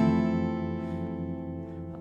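Archtop guitar chord ringing out and slowly fading.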